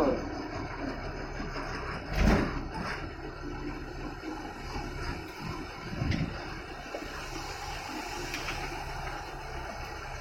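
Ashok Leyland bus diesel engine running steadily, heard from inside the driver's cab. There is a loud rushing burst about two seconds in and a shorter one around six seconds.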